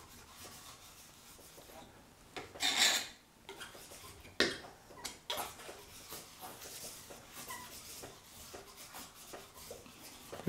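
Steel palette knife scraping and spreading thick oil paint across a canvas in a series of strokes, with one louder, hissing scrape about three seconds in.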